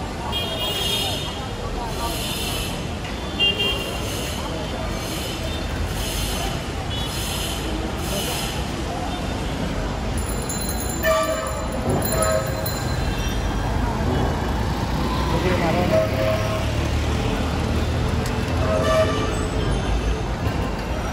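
Busy city street traffic with vehicle horns honking a few times, mostly from the middle on, over a steady traffic rumble and people's voices. Through the first half, a high chirping sound repeats about once a second.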